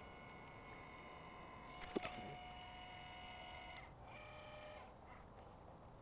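Celestron NexStar 8SE's drive motors whining faintly as the telescope slews: a thin, steady, high whine of several pitches that shifts with a click about two seconds in and stops just before four seconds, then a brief second whine.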